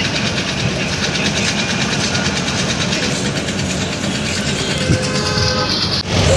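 Steady loud rumble of road traffic, with a brief pitched tone like a vehicle horn near the end.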